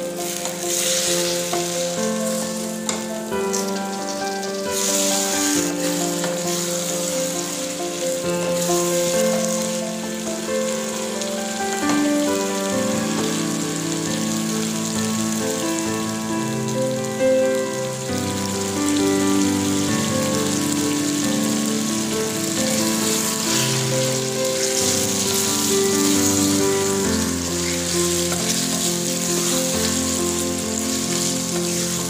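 Chicken pieces in masala gravy frying in a steel pan with a steady sizzle, stirred now and then with a wooden spatula. Background music with held melodic notes plays over it throughout.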